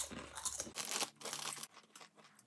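Rolled corn chips being bitten and chewed close to the microphone: a run of crisp crunches through the first second and a half, then quieter.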